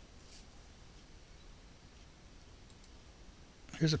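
A computer mouse button clicking once about a third of a second in, then two fainter clicks a little before the end, over a low steady hum.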